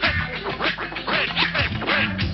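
Old-school hip hop instrumental break: a drum beat with turntable scratching over it, the scratched record making quick rising-and-falling pitch sweeps several times a second.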